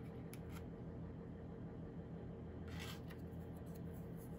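Quiet handling of cardboard cutouts and a glue bottle on a tabletop: two light clicks in the first second, then a brief rustle about three seconds in, over a steady low room hum.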